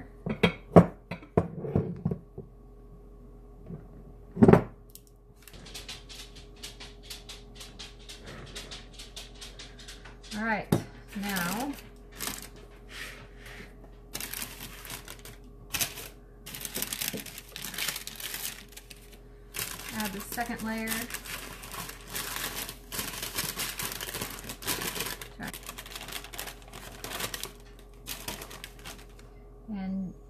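Metal icing spatula scraping as buttercream is spread over a cake layer, then scraping and rustling as the spatula is worked under a second cake layer lying on parchment paper, with the paper crinkling. One sharp knock a few seconds in.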